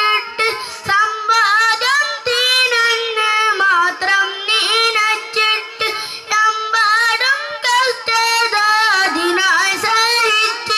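A young boy singing solo in a high child's voice, with no accompaniment. Held, bending notes come in phrases separated by short breaths.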